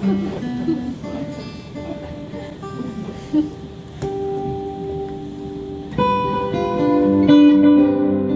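Amplified acoustic guitar played solo. Single notes ring out sparsely at first, then the picking turns fuller and louder about six seconds in.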